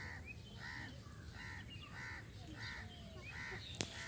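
A bird calling over and over in a steady series, about one call every two-thirds of a second, with fainter chirps of other birds behind it. A single sharp click near the end.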